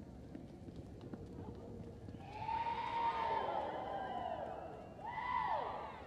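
Arena spectators whooping and hollering for a reining horse, several voices in long rising-and-falling calls about two seconds in, then a second burst near the end. Faint hoofbeats on the arena dirt come before them.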